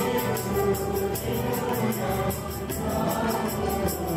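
A congregation singing a Nepali worship song together, with a steady jingling percussion beat.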